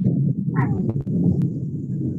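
Muffled, rumbling noise picked up by a participant's microphone on a video call, with a couple of sharp clicks about a second in.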